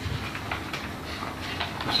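Sheets of paper being shuffled and turned on a table: a few short rustles and soft taps over a steady low room rumble.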